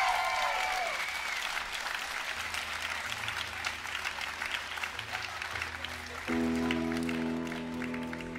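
Concert audience clapping and cheering between songs, with whoops trailing off about a second in. Under the fading applause a low sustained note comes in, and about six seconds in the band enters with a held chord.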